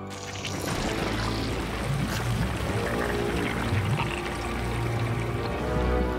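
Cartoon sound effect of thick goo oozing and gushing, with music underneath.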